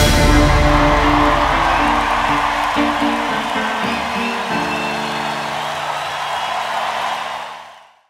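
The closing bars of a pop song. The beat stops and a held chord rings on, with its notes shifting a few times, under a wash of crowd noise. It all fades out near the end.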